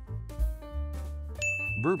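Background music with a steady bass, and a single bright ding about one and a half seconds in that holds one high pitch for most of a second.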